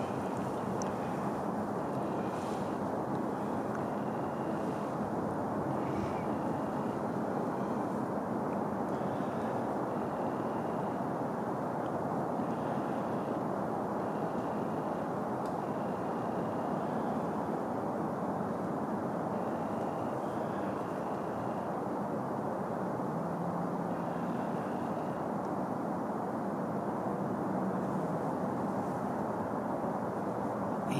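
Steady low background rumble of outdoor ambience, with faint short high notes now and then.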